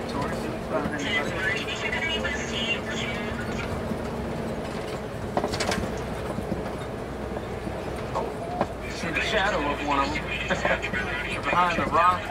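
Safari ride truck running steadily as it drives along, a low rumble with a faint steady hum, while faint voices of riders come and go.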